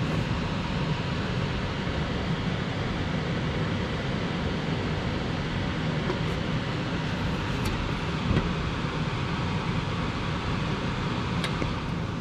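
Motorized Baileigh bead roller running steadily at an even speed as its dies roll a joggle step into a 16-gauge aluminum panel.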